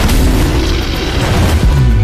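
Deep booming sound effects of a magical energy attack, with a sudden hit at the start and a heavy low swell near the end, over dramatic music.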